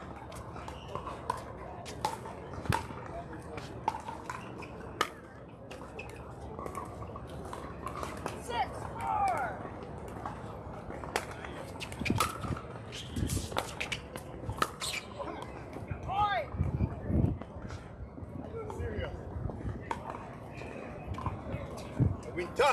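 Sharp pops of pickleball paddles striking the hard plastic ball, coming irregularly through a rally, over a background of distant voices.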